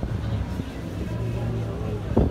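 Cruise ship's steady low hum heard from the open deck, with faint voices chattering in the background.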